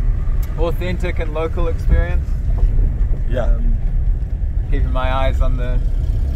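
Steady low rumble of a car's engine and tyres heard from inside the cabin while driving, with people talking over it.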